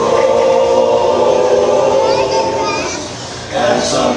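Male barbershop chorus singing a cappella in close four-part harmony, holding sustained chords. The sound eases off a little after three seconds, and the voices come back in just before the end.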